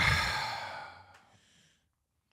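A long breathy sigh, an exhale that fades away over about a second and a half.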